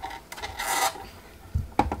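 Flip waffle maker's lid closed down onto hot batter: a short burst of steam hissing about half a second in, then a few hard plastic-and-metal clunks near the end as the lid and handle settle.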